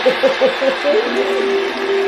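A man laughing in short pulses, then holding one long 'ohh' for about a second and a half, over the steady noise of the stadium crowd from the game broadcast.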